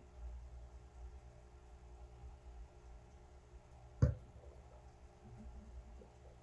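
Quiet sipping of beer from a glass over a low steady room hum, with a single short knock about four seconds in.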